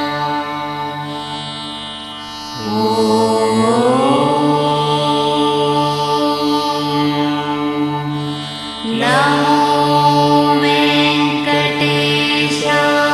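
Indian devotional music: a voice chants long held notes over a steady drone. New sung phrases start with an upward slide about two and a half seconds in and again about nine seconds in.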